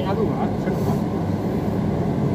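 Steady low hum inside a Kalayang skytrain car standing at a station, from the train's onboard equipment, with faint voices in the background.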